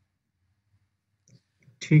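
Near silence with room tone, broken only by a faint brief sound about a second and a half in, before a man starts speaking at the very end.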